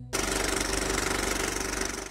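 End-card sound effect: a loud, fast rattling buzz that starts suddenly a moment in and holds steady.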